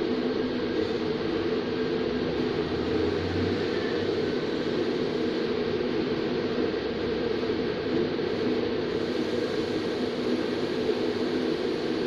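Steady background hum and hiss, unchanging throughout, with no distinct events.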